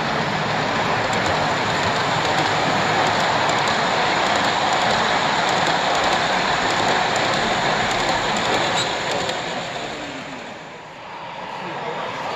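Model train with a diesel locomotive and passenger cars rolling past on its track: a steady rumble of wheels on rail that fades away near the end, over the murmur of voices in a crowded hall.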